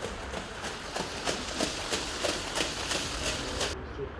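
Hoofbeats of trotting harness horses pulling sulkies on a sand track, an even beat of about three strikes a second that cuts off suddenly near the end.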